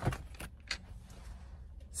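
A few light clicks and rustles of a hand pressing over the phone's camera and microphone.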